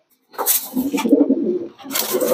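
Racing pigeon cooing, a string of low pulsing coos starting about a third of a second in, in a small enclosed loft.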